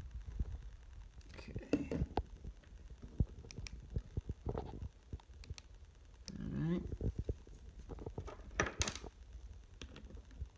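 Scattered clicks and knocks of handheld two-way radios being handled and their keypad buttons pressed, with a brief voice about six and a half seconds in.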